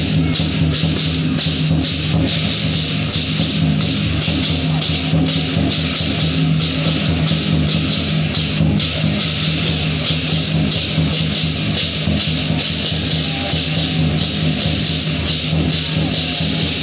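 Loud music with a fast, steady beat, about three beats a second, accompanying the dance.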